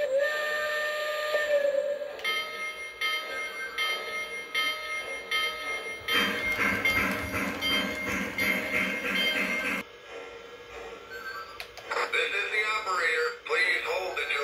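Onboard electronic sound system of a Lionel O gauge steam locomotive: a whistle blows for about two seconds, and later rhythmic steam chuffing runs for a few seconds.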